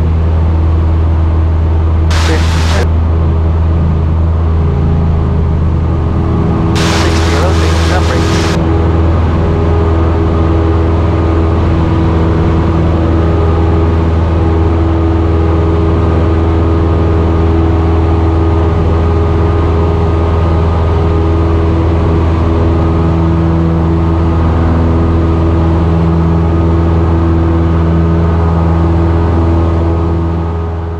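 Single-engine light aircraft's piston engine and propeller at takeoff power, a loud, steady drone heard from inside the cockpit through the takeoff roll and initial climb. Two brief hissing bursts come about two and seven seconds in.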